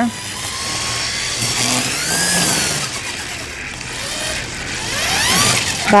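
String trimmer (weed eater) running, its motor revving up and down in rising and falling whines about two seconds in and again near the end.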